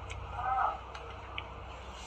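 A woman's brief vocal sound about half a second in, then a few faint ticks over a low steady hum.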